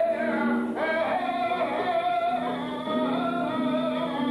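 Male flamenco singer (cante) holding long, wavering, ornamented notes, accompanied by a flamenco guitar.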